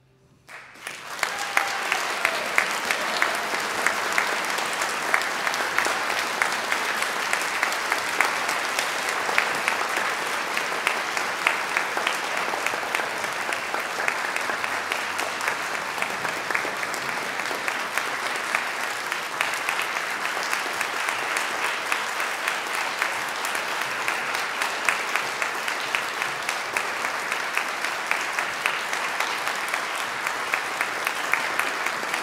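A moment of silence, then audience applause breaks out about a second in and continues steadily.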